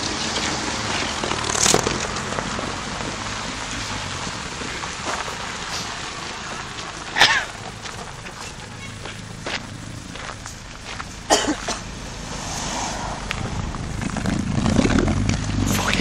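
Honda Civic Type R moving off over gravel: tyre and engine noise under a rough hiss, with a few sharp knocks and a low rumble building near the end.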